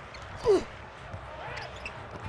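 A basketball being dribbled on a hardwood court, with soft knocks under the arena's crowd noise. A player gives one short falling shout about half a second in.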